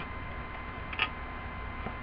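A single short click about a second in, over a steady background hiss with a faint high electrical whine.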